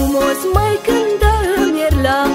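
Romanian folk song: a woman's singing voice with a wavering, ornamented melody over a folk band backing with a steady bass beat, the voice coming in about half a second in.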